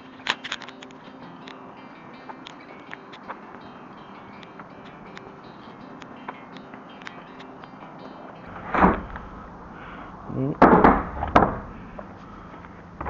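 Footsteps and scattered clicks of a handheld camera on the move, then a few loud bumps and rustles near the end as the bins are reached.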